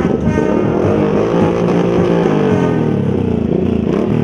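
A column of cruiser motorcycles riding past at low speed, several engines running together, their pitch rising and falling as they go by.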